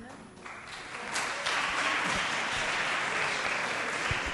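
Audience applause: a room of people clapping, starting thinly about half a second in and swelling to a full, steady clapping about a second in.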